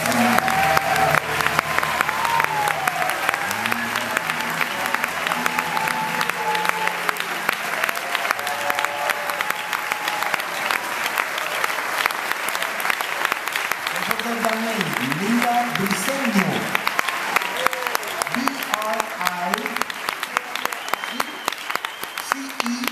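Audience applauding, with voices calling out and cheering over the clapping; the applause thins a little near the end.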